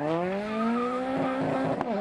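Peugeot 208 rally car engine accelerating hard away, its note rising steadily. Near the end there is a short sharp crack and the pitch drops, as on an upshift.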